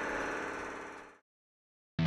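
A steady background drone with many fixed tones fades out over about a second, then cuts to dead silence.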